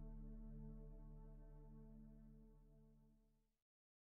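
Layered crystal singing bowls holding steady, overlapping tones that fade away and cut to silence about three and a half seconds in.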